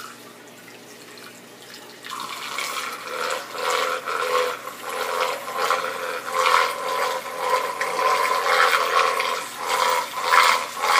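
A homemade computer-fan magnetic stir plate at full speed, churning 1000 mL of water in a glass beaker into a deep vortex. About two seconds in the sound jumps from quiet to a loud, wavering rush of churning water.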